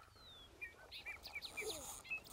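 Faint bird chirps: a quick run of short calls starting about half a second in.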